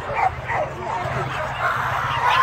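Dogs yipping and barking in short high calls, over the chatter of a crowd.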